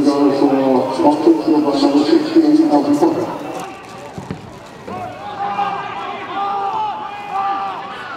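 Football supporters singing a chant in held notes, loud for the first few seconds, then fainter from about five seconds in.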